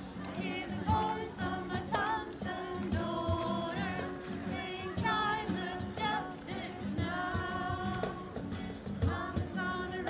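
A group of women singing a song together, holding each note for about a second with short breaks between phrases.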